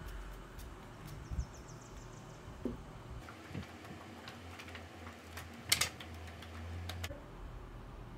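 Quiet handling of makeup items: scattered small clicks and taps over a low steady hum, with a sharper clatter about six seconds in.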